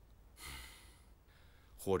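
A man draws one short, audible breath about half a second in, then begins speaking just before the end.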